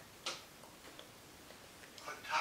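Quiet room tone in a pause between spoken sentences. A short hissing noise comes about a quarter second in, and a faint tick near the middle.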